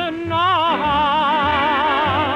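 Orchestral ballad music from a 1955 radio broadcast, its notes held with a wide, even vibrato and the sound dull and narrow from the old recording.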